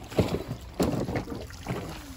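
Feet wading through a shallow, stony creek: about four irregular splashing steps in the water, over a low rumble of wind on the microphone.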